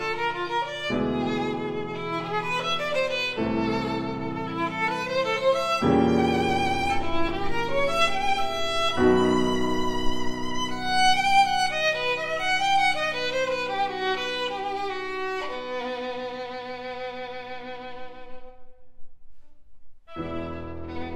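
Classical violin with piano accompaniment: the violin plays a sustained line with vibrato over piano chords that change every few seconds. Near the end the music dies away on a held note, with a brief pause just before the next phrase begins.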